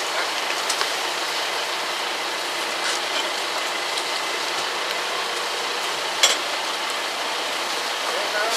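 A steady rushing noise at a building fire, with a few short sharp cracks, the loudest about six seconds in.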